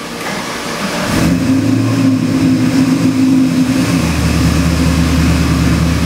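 Chevrolet LS3 376-cubic-inch fuel-injected V8 crate engine on a dyno firing up: it catches about a second in and runs at a fast idle, then comes back down to a lower idle around four seconds in.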